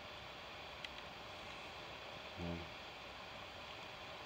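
Quiet outdoor ambience in a forest: a faint steady hiss, with a single soft tick about a second in and a brief low hum of a man's voice about two and a half seconds in.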